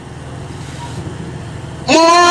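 A pause in amplified chanting: a steady low hum and background noise through the public-address system, growing slowly louder. Right at the end a loud, held chanted note comes in.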